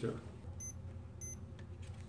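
Two short, high-pitched electronic beeps about half a second apart over a faint steady low hum.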